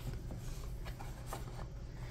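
Faint handling of a paperback picture book as its pages are turned: a few soft paper rustles and light taps over a low steady hum.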